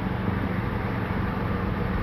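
Steady low mechanical hum over constant outdoor background noise, with no distinct events.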